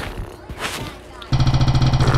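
Spin-the-wheel phone app's spinning sound, starting suddenly just over a second in: fast, even ticking over a steady buzzing tone as the wheel turns.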